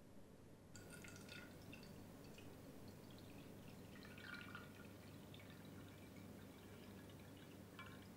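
Water poured from a glass jar into a glass bowl, faint, starting about a second in.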